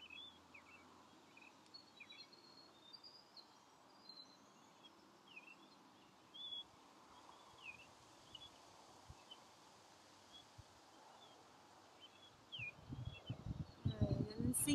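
Faint outdoor quiet with small birds chirping off and on, short high calls scattered throughout. A few low thumps and rumbles come near the end.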